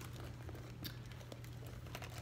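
Faint crinkling and rustling of a red see-through plastic makeup bag being handled and opened out, with a few small clicks.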